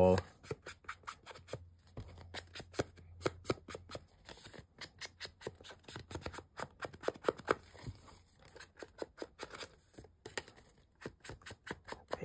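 Handheld ink blending tool rubbed and dabbed along the edges of patterned cardstock: a run of quick short strokes, several a second, with brief pauses.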